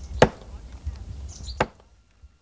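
Two axe blows into a tree trunk, sharp single strikes about a second and a half apart, over a low rumble.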